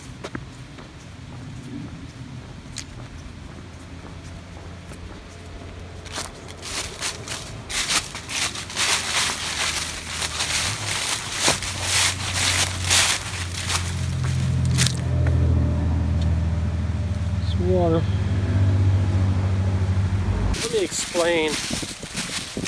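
Footsteps crunching through dry fallen leaves, a quick run of sharp crackles. A low rumble builds under them in the later part and stops suddenly.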